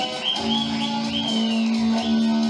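Rock music with guitar: a high lead line bending up and down in pitch over a steady held low note.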